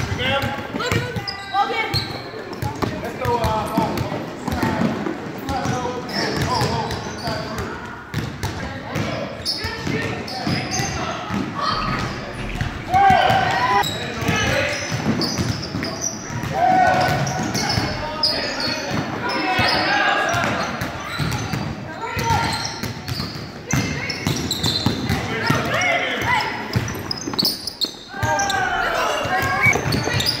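A basketball bouncing on a hardwood gym floor during play, mixed with indistinct shouting from players and onlookers in a large, echoing gym.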